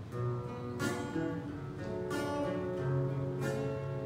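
Acoustic guitar strumming: three chords struck about a second and a quarter apart, each left to ring.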